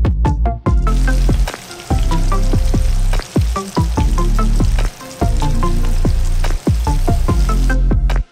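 Flour-coated chicken pieces deep-frying in hot oil, a steady sizzle that comes in about a second in and cuts off just before the end. Background electronic music with a steady beat plays throughout.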